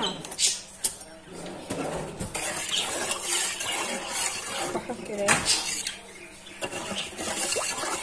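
A metal spoon stirring water in an enamel pot, clinking and scraping against the sides, with a couple of sharp clinks in the first second.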